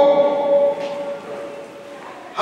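A saetero singing a saeta unaccompanied, holding a long note that ends about three quarters of a second in and fades away into a short pause between sung phrases.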